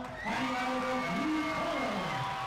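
A ring announcer's voice drawing out the winner's name in long, held, sung-out notes that slide up and down in pitch.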